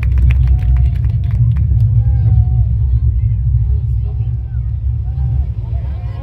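Faint, scattered voices over a steady low rumble on the microphone, with a quick run of sharp clicks or taps in the first two seconds.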